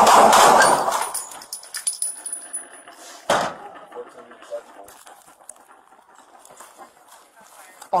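Rapid volley of handgun shots fired by deputies, loud and close, breaking off within the first second. About three seconds in comes a single sharp knock, followed by a faint radio call.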